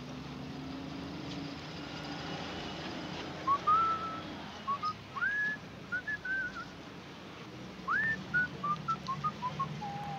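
A person whistling two short phrases of notes, several of them sliding up and then held, over a steady low background hum.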